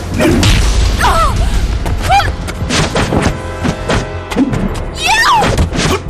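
Fight-scene sound effects: a rapid run of punch and block impacts over background music, with a few short shouts from the fighters.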